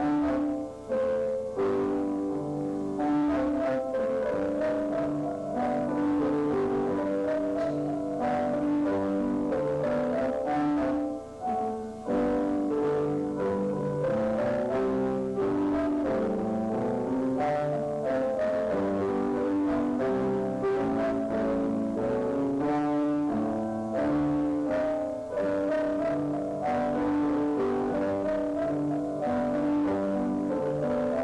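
Piano duet: two young girls playing four hands at one grand piano, a continuous flow of notes. It is heard from an old home-video recording played back into the room.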